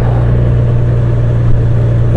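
Large touring motorcycle's engine running at a steady cruising speed while riding, with wind and road noise over it.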